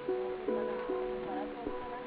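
Background music: a melody on a plucked string instrument, with a new note starting about every half second.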